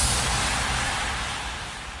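A hissy noise-sweep effect at the end of an electronic reggaeton dance mix, left ringing after the beat stops and fading out steadily.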